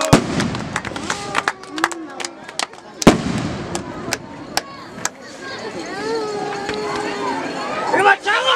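Firecrackers going off: two loud sharp bangs about three seconds apart, with smaller cracks between them, among crowd voices.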